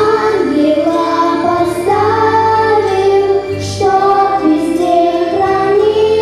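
Children singing a Russian prayer song into microphones, their voices over an instrumental accompaniment whose low held notes change every couple of seconds.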